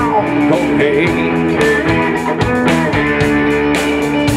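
A live blues-rock band playing loud, with electric guitar to the fore over bass and drums.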